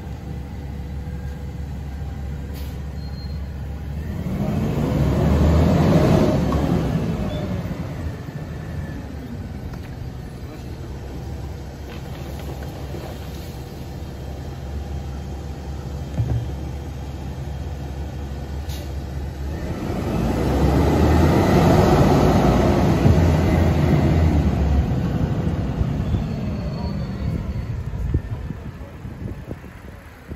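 Rear-loading garbage truck's engine running at idle, revving up twice into louder runs of several seconds as its packer cycles to compact yard waste. A short knock sounds about two-thirds of the way through.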